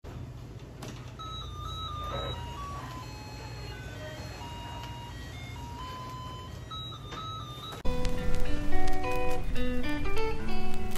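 Faint in-store music at an Olive Young shop: a simple chiming melody of single notes over a low steady hum. About eight seconds in, much louder music with quick plucked notes suddenly cuts in.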